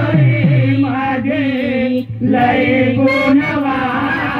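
Marathi folk singing in khadi gammat style: a voice holds long chanted notes, bending in pitch, with a dholak drum playing underneath.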